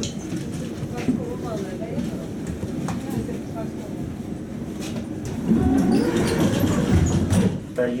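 Interior noise of a Tatra T3 tram: a steady rumble with scattered clicks and knocks. It grows louder about five and a half seconds in, with voices mixed in.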